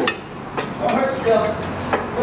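About four sharp, irregularly spaced metal clinks and knocks from hand tools being worked on a Jeep's track bar and axle, with faint talk and a short laugh near the end.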